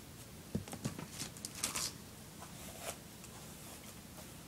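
Hairbrush drawn through long, fine hair: a few faint, soft, scratchy rustling strokes in the first three seconds.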